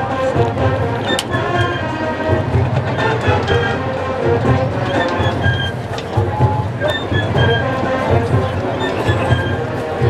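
Marching band playing, with held brass chords over a steady bass-drum and low-brass beat.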